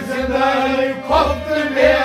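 Men singing a Kashmiri Sufi devotional song (aarifana kalaam) together, with gliding sung lines over harmonium, rabab and a bowed fiddle, and a steady low beat underneath.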